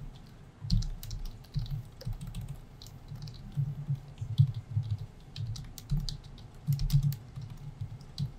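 Typing on a computer keyboard: irregular runs of keystrokes, each click with a dull low thump.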